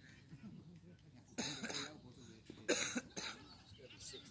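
A person close to the microphone coughing three times, the last two coughs in quick succession, over faint distant voices.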